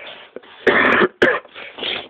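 A person coughing: a harsh burst about two-thirds of a second in, then a shorter second cough and a weaker one near the end.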